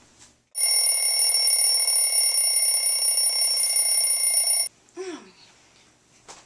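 Bell-type alarm clock ringing steadily for about four seconds, then cutting off suddenly: the wake-up alarm.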